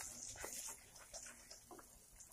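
Metal spatula scraping and tapping against an iron kadai while stirring a thick onion-tomato masala: a handful of faint, irregular short scrapes.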